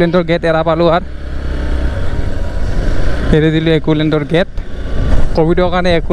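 A man's voice in three short stretches with no clear words, held and wavering like humming or singing, over the low rumble of a motorcycle being ridden.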